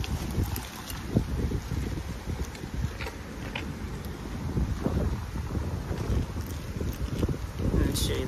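Wind buffeting the phone's microphone: an uneven low rumble that rises and falls in gusts.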